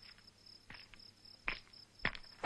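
Crickets chirping in a high, evenly pulsing trill, with two soft steps on gravel, one about halfway through and one near the end.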